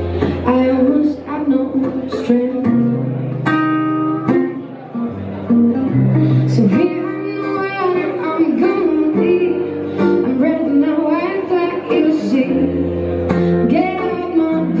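Live pop-rock song: a woman singing lead over a Nord Electro 6 stage keyboard and a picked and strummed acoustic guitar, with low keyboard notes held under the melody.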